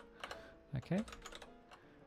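Typing on a computer keyboard: an irregular run of key clicks while code is entered into an editor.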